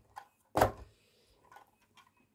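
A short plastic clack about half a second in, with a faint tick just before it: a small opening hatch on a die-cast toy fire engine being worked by hand.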